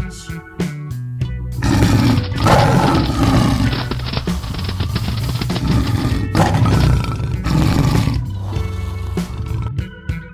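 Background music with a steady bass line, overlaid from about a second and a half in until near the end by a long, loud big-cat roar sound effect.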